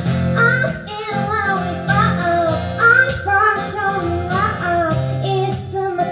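A woman singing a melody over her own strummed acoustic guitar.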